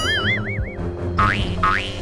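Background music with cartoon sound effects laid over it: a wobbling, boing-like warble in the first second, then a run of short rising whistle-like slides repeating a little over twice a second.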